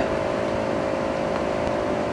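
Steady background hum of a running machine, an even noise with a constant tone through it.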